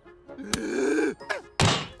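Cartoon sound effects: a sharp thunk, then a muffled groan from a stuffed mouth, then a second, heavier thud.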